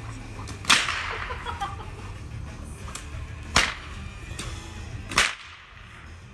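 A whip cracked three times, each a sharp crack, with a second or more between them, over a low steady rumble.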